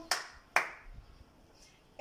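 One person clapping her hands twice, about half a second apart.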